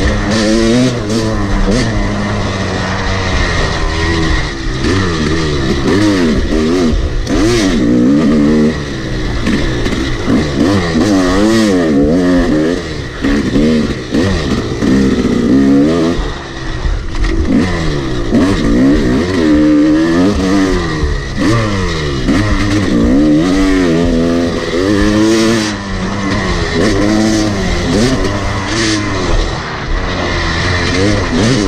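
Yamaha YZ250 two-stroke dirt bike engine revving up and down over and over as the rider opens and closes the throttle, with short drops near 9 and 16 seconds.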